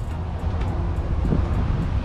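Low, fluttering rumble of wind buffeting the phone's microphone, with a faint voice briefly heard about halfway through.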